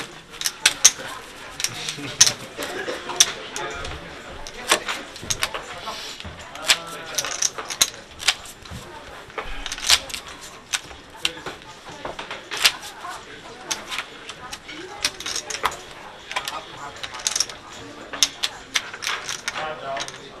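Poker chips clicking against each other as players handle their stacks, in irregular sharp clicks that come in quick clusters, over faint background talk.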